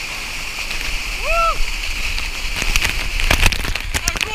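Waterfall pouring steadily, heard through a waterproof camera housing that muffles it. From about three seconds in, falling water hits the camera directly in a run of sharp splashes as it goes under the cascade.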